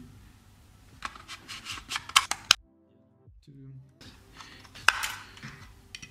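Scattered plastic clicks and taps from handling a DJI Mini 2 drone and its removable battery, with the sound dropping out to near silence for about a second and a half midway.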